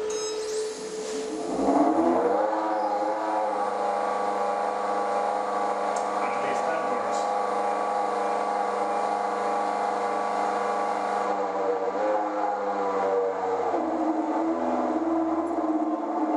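Old Strömberg 5.5 kW three-phase induction motor run unloaded from a Vacon CX variable frequency drive. Its whine rises in pitch as the drive ramps it up over the first couple of seconds, then holds as a steady electric hum with a faint high whistle, and the pitch eases down slightly about twelve seconds in.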